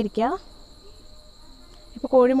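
Crickets trilling steadily in the background, a thin, unbroken high-pitched tone, with a brief falling vocal sound from a woman at the very start.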